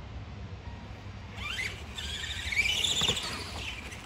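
Electric motor of a radio-controlled monster truck whining as it speeds up: after a quiet first second and a half, a high whine rises in pitch and then wavers for about two seconds.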